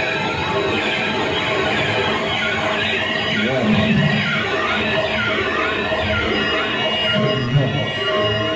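Live noise-rock band playing: a loud, dense wall of guitar and electronics full of wavering high tones, continuous throughout.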